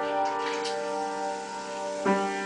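Piano chord held and slowly dying away, its several notes ringing on with no new keys struck.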